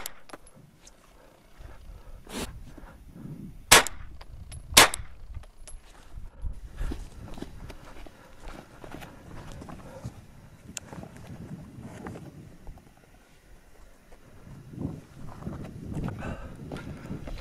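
9mm carbine shots fired at a ballistic plate: a lighter shot a couple of seconds in, then two loud shots about a second apart. They are followed by uneven crunching footsteps on gravel and dirt.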